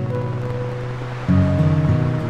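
Slow, gentle acoustic guitar music over a steady wash of ocean waves, with a new chord struck about a second and a half in.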